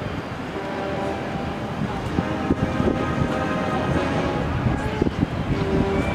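Large car ferry Mont St Michel passing close by under way, a steady drone of its engines and machinery with several held tones, mixed with wind on the microphone.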